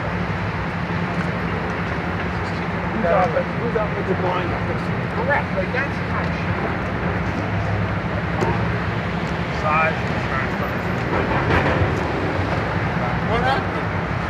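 Busy city-street din: a steady rumble of traffic with a constant low engine hum, and brief snatches of distant voices from passers-by.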